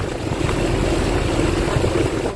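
Boat engine running steadily under way: a low drone with a steady hum and a rushing noise.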